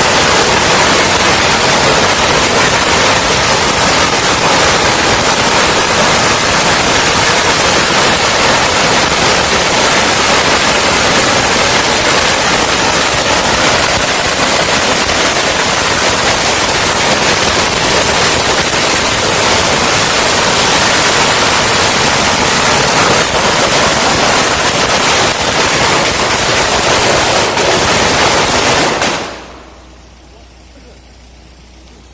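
A long string of firecrackers going off in a loud, dense, unbroken crackle, stopping abruptly about a second before the end.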